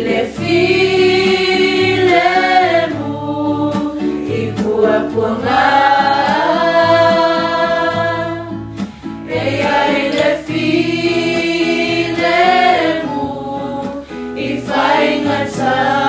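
A group of men and women singing together as a choir, in long phrases with held notes and short breaks between them.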